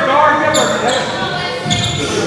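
Voices calling out in a gymnasium during a basketball game, with two short high squeaks, about half a second in and again near the end.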